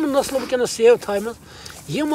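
Speech only: a man talking, with a short pause a little after the middle.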